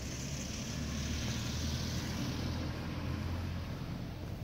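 Steady low engine hum with a hiss, like a motor vehicle running nearby, easing off near the end.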